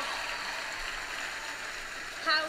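Audience applause in a large hall, fading steadily.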